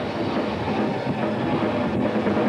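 Live metal band playing loud: heavily distorted electric guitars, bass and drums in a dense, steady wall of sound.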